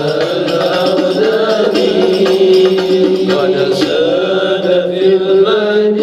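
A qasidah, a devotional song in praise of the Prophet Muhammad, sung by a man into a microphone in long, wavering held notes, with a steady beat of hand-held frame drums.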